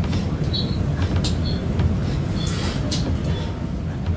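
Steady low room rumble with a few faint clicks.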